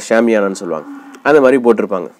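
A man talking in Tamil, with a drawn-out vowel and a short quieter pause in the middle.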